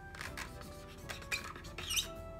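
Felt-tip permanent marker squeaking and scratching across an inflated latex balloon as lines are drawn on it, with a short rising squeak near the end.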